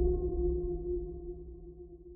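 The ringing tail of a deep, gong-like cinematic hit: a steady low tone with higher overtones over a low rumble, fading away throughout.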